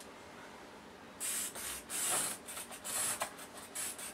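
A fabric marking pencil drawn along the edge of a quilting ruler on cotton fabric in a run of short, scratchy strokes, starting about a second in, marking a straight stitching line.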